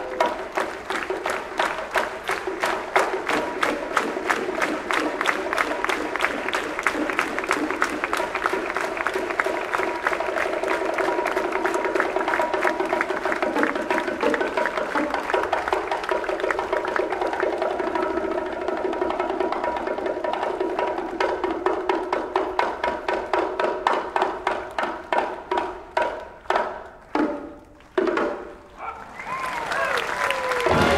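A percussion break in a wind band's Latin number: bongos played against a steady rhythm of hand-clapping, with held notes underneath. In the last few seconds the beat breaks up into separate hits with pauses, then the full band comes back in.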